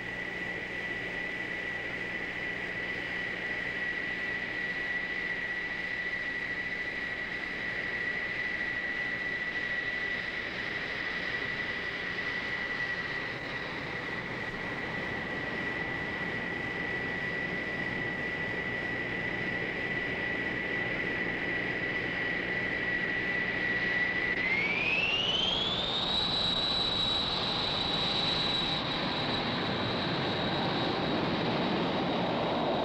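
Lockheed SR-71 Blackbird's Pratt & Whitney J58 jet engines running with a steady high-pitched whine over a rushing noise. About 24 seconds in the whine rises smoothly in pitch and then holds at the higher pitch.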